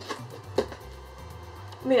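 Background music with a steady bass line and a regular ticking beat. Two light knocks in the first second as a box is handled.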